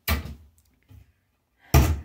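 Bathroom vanity cabinet doors being shut: a thud right at the start and a louder one near the end, with a faint knock between.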